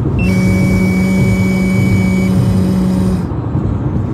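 A steady breath blown into a car's ignition-interlock breathalyzer for about three seconds, with a steady low hum and a higher electronic tone that stops a second before the breath ends. The blow is too short for the device, which then asks for a longer one.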